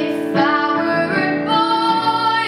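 Teenage girl singing a pop ballad cover, holding sustained notes over instrumental accompaniment.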